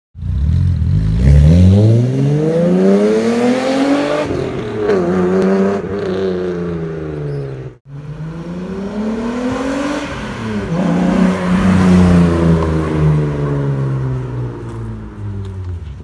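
Straight-piped Volkswagen Golf VR6 on a Remus exhaust, revved hard: the revs climb for about three seconds, drop at a shift and hold. After a brief break just before halfway comes a second pull, the revs rising again and then falling away as the car passes.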